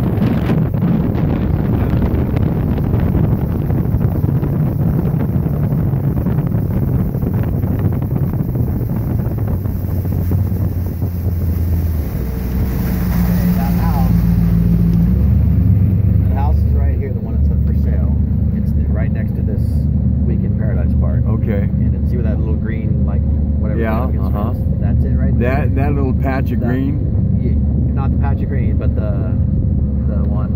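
Boat motor running steadily while under way, with wind noise on the microphone; the engine note changes about halfway through and the wind eases after that.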